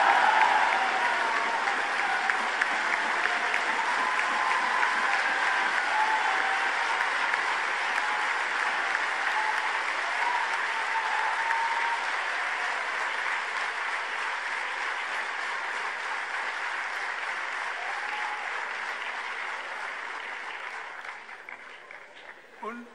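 A large audience applauding, with a few voices calling out within it. The clapping is loudest at the start and gradually dies away, fading out near the end.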